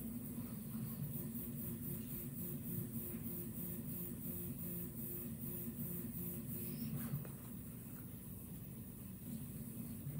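A steady low background hum, with a faint, evenly pulsing tone over it that stops about seven seconds in.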